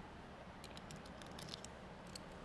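Faint small clicks of pistol parts being handled, a few light ticks against a quiet room hum.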